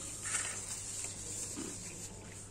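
Chewing noises of someone eating battered fish and chips.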